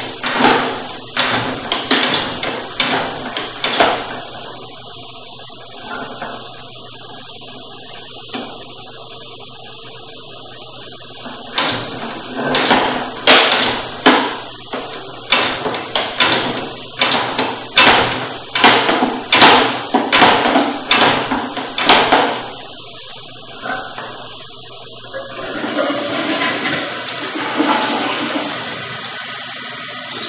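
Sewer inspection camera push cable being fed by hand into a drain line: repeated short rasping strokes, roughly one to two a second, with a pause of several seconds in the middle. Near the end the strokes give way to a steadier rushing sound.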